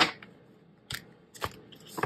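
A deck of stiff-stocked tarot cards being shuffled by hand. Four sharp snaps as the card edges meet, the first the loudest.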